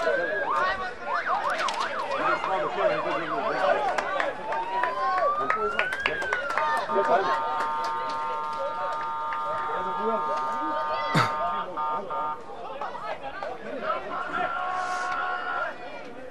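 Fans' sirens sounding to greet a goal, over crowd voices. A tone rises in pitch, breaks into a fast warble, rises again, then gives way to a long steady blast of several notes at once lasting about six seconds, with a shorter steady blast near the end.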